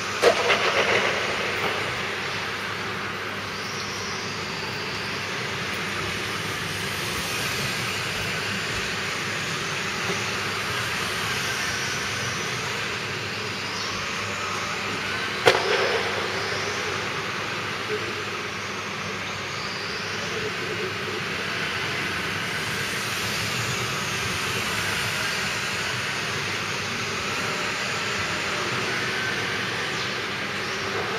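Electric 1:10 RC car motors whining up and down in a reverberant sports hall, with two sharp knocks, one at the very start and one about halfway through.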